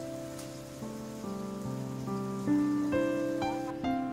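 Slow, soft piano music with held notes changing every half second or so. A faint steady hiss lies under it and stops shortly before the end.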